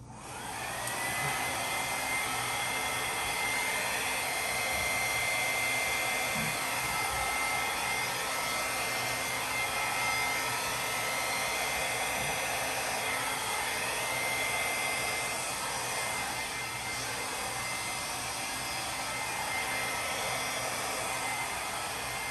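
Hand-held hair dryer switched on and blowing wet acrylic paint across a canvas. It runs steadily, with a whine that rises as the motor spins up during the first second and then holds at one high pitch.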